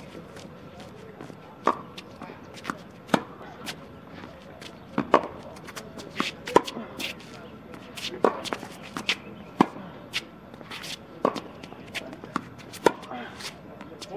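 Tennis balls being struck and bouncing on a hard court: sharp pops, the loudest about every one and a half seconds, with fainter ones between.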